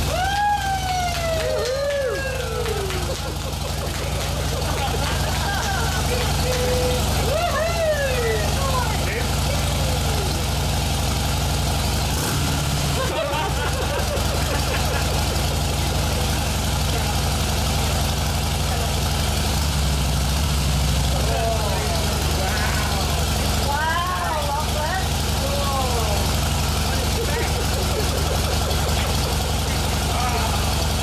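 Harley-Davidson V-twin motorcycle engine idling steadily throughout, with voices calling out over it now and then.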